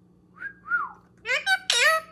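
Blue Indian ringneck parakeet giving two short whistled notes, then a loud burst of high, rising calls near the end.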